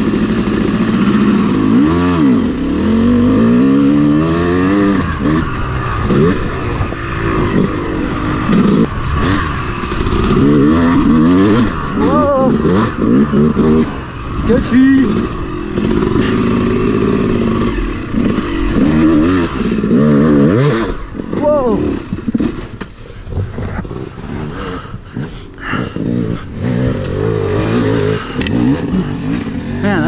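Two-stroke dirt bike engine revving up and down repeatedly as the bike accelerates and shifts along a trail, heard close up from the rider's own machine. The engine gets quieter and choppier in the last third as the bike slows.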